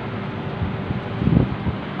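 Wind buffeting the microphone over a steady hum of street traffic, with a stronger gust a little past halfway.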